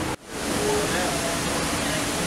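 Steady rush of water from a small waterfall spilling into a landscaped pond. It comes in just after a brief cut in the sound, with faint voices behind it.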